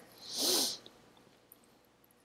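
A woman takes one audible breath through her mouth or nose. It is a soft breathy rush that swells and fades over about half a second, and a faint click follows.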